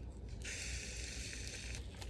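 Egg sizzling on the hot plates of a closed Dash mini waffle maker: a steady hiss that starts suddenly about half a second in and stops suddenly just before the end.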